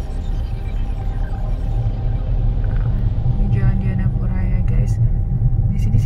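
Steady low rumble of a car's engine and tyres, heard from inside the cabin while it moves slowly in traffic.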